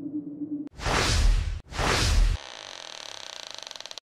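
Sound effects of a TV station's logo ident. A steady low tone gives way about two-thirds of a second in to two loud rushing swells, one right after the other. They are followed by a quieter fluttering, ringing tail.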